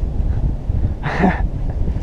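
Wind buffeting the microphone in a steady low rumble, with a short hissing burst about a second in.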